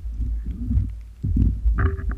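Low, uneven rumbling and buffeting picked up through the camera's waterproof housing as it swings just above the water after being hauled out.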